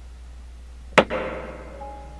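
Mandocello strings: the last ring of a chord dies away, then about a second in a sharp click is followed by a few strings ringing out and fading.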